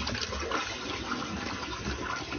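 Toilet flushing: water rushing steadily through the bowl and draining.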